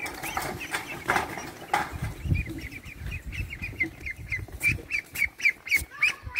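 Young mulard ducks peeping, the calls coming in a rapid, even series of several a second in the second half, with wing flapping and scuffling as a duck is caught and held.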